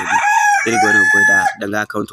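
A single drawn-out animal call, about a second and a half long, heard behind a man speaking.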